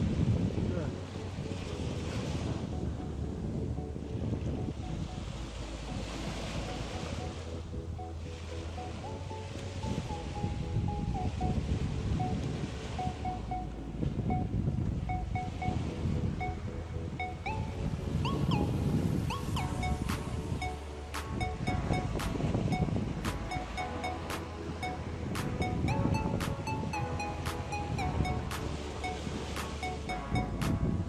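Small sea waves washing up on a sandy beach, the surf swelling and fading every few seconds, with wind rumbling on the phone's microphone. Background music with a melody comes in under it, and a steady beat joins about two-thirds of the way through.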